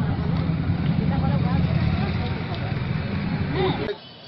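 A steady low rumble, like nearby traffic or an engine, with people talking over it; it all cuts off abruptly just before the end.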